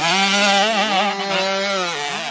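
Yamaha YZ65 two-stroke dirt bike engine held at high revs under full throttle as it passes close by, its pitch sagging slightly near the end.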